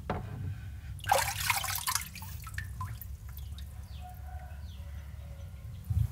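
Water splashing in a tub as a hand lifts a phone out, loudest for about a second near the start, followed by scattered drips and small taps.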